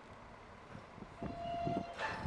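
Faint mechanical rumble that builds about halfway through, with a brief steady horn-like tone near the end, from heavy lifting machinery.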